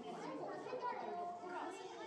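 Background chatter of many visitors' voices, children's voices among them, overlapping without any clear words.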